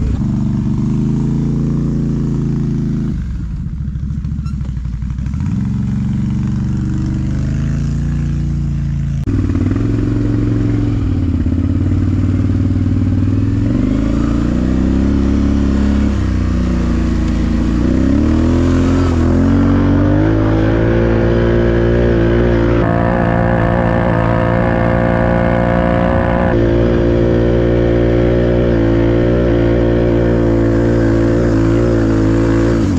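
Can-Am Renegade ATV's Rotax V-twin engine under way, revving up and down at low speed through the first half. It then runs more steadily at higher revs over the second half as the quad climbs a grassy slope.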